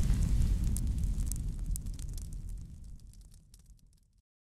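Fire-and-boom sound effect of a logo animation: a deep rumble dying away with scattered fire crackles, fading out near the end.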